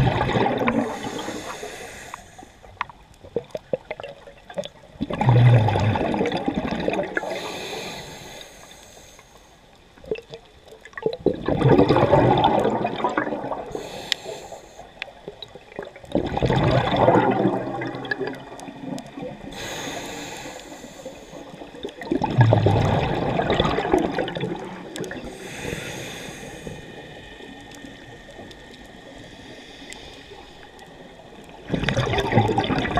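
A diver breathing through a scuba regulator underwater: exhaled bubbles gurgle loudly about every five to six seconds, five times, and alternate with a softer hiss of inhaling.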